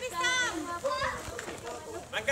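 Young children's high-pitched voices calling and chattering while they play, loudest in the first second.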